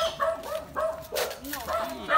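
A dog barking several times in short, yappy calls, with people's voices around it.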